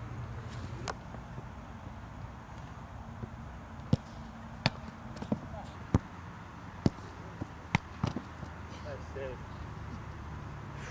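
Soccer balls being kicked in shooting practice: about eight sharp, irregularly spaced thuds of balls struck hard, most of them between about four and eight seconds in.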